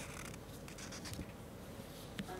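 Faint rubbing and scratching of a plastic sachet being pressed and handled on a sheet of paper on a tabletop.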